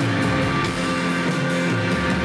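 Live rock band playing: electric guitar over drums and cymbals, loud and continuous.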